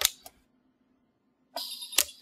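A short click, then dead silence for about a second, then a faint steady high hum from the pulse arc micro-welder ending in one sharp snap as its weld pulse fires with the electrode on the metal.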